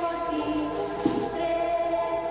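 Background music: a choir singing long, sustained chords.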